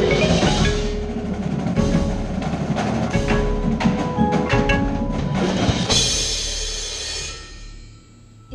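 Marimba played with four yarn mallets: quick successions of struck wooden-bar notes with short ringing tones. About six seconds in a bright cymbal wash joins, and the sound dies away near the end.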